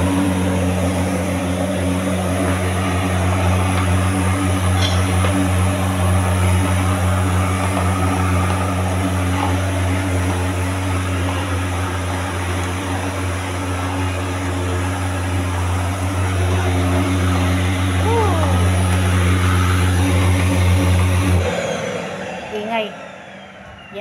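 Blue canister vacuum cleaner running steadily as its floor nozzle is pushed over a rug: a loud motor drone with a deep hum and a high hiss. It is switched off near the end, and the sound cuts off sharply and runs down.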